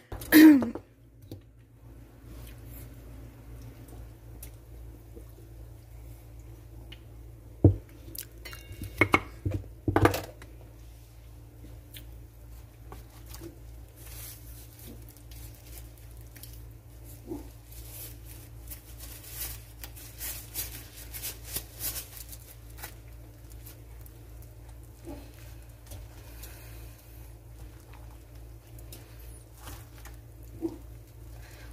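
Kitchen handling sounds over a steady low hum: a few knocks of dishes and a plastic tub in the first ten seconds. Then soft rustling and squishing as raw chicken pieces are worked in flour.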